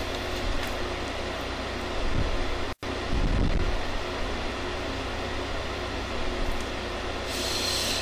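Steady whooshing hum of a ventilation fan, with a brief dropout about three seconds in. Near the end comes a short breathy hiss as the man breathes out smoke.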